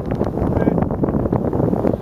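Wind buffeting the camera microphone: a dense, uneven rumble with irregular gusty flutter.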